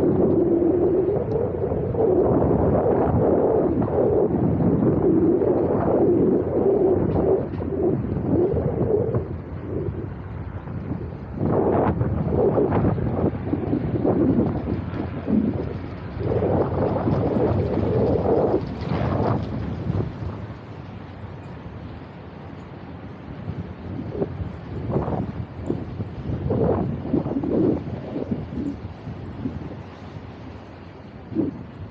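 Wind buffeting the microphone of a small action camera carried on a moving bicycle: a loud, gusty rumble with a wavering moan in the first part, surging in gusts and easing somewhat in the last third.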